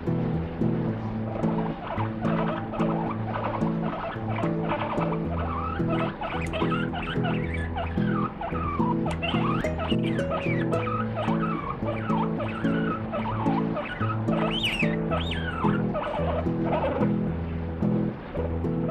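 Abyssinian guinea pig giving many short, high squealing calls that rise and fall in pitch while a hand strokes it, the loudest a little before the end: a sign of its displeasure at being touched. Background music with a steady chord bed plays underneath.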